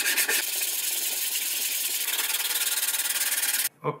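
A small purpleheart wood block rubbed back and forth by hand on a sheet of sandpaper laid flat, a steady rasping hiss that cuts off suddenly shortly before the end.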